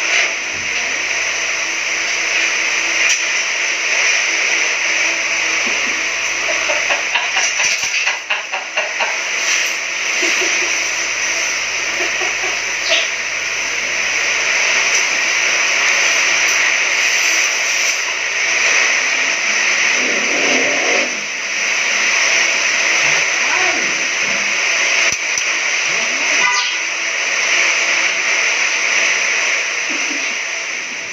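A loud, steady hiss throughout, with a few faint, brief sounds in places.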